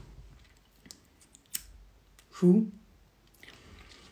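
A woman's brief hummed "mm" about two and a half seconds in, between a few faint soft clicks over quiet room tone.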